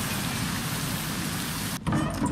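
Waterfall: a steady rush of falling water that cuts off abruptly near the end.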